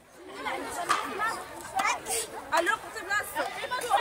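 A group of children talking over one another in short, overlapping bits of chatter, with no clear words.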